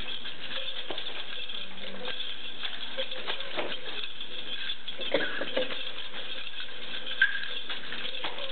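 Nunchaku being swung and caught, with a few sharp clacks and smacks, the loudest about seven seconds in, over a steady hiss.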